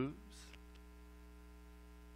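Steady electrical mains hum with many evenly spaced overtones, with no other sound after the first half second.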